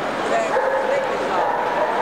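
A dog whining, with a held whine about a second long in the second half, over the chatter of a crowd.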